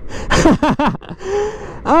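A man laughing in a quick run of short breathy bursts, then a fainter held vocal sound, with his voice breaking into an exclamation at the very end.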